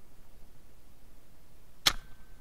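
A single sharp snap about two seconds in, a speargun firing underwater, followed by a faint short ringing tone.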